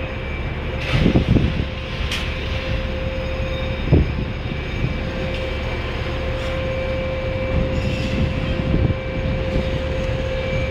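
Container crane's boom hoist machinery running as the boom is lowered: a steady rumble with a constant whine, and a few knocks about a second, two seconds and four seconds in.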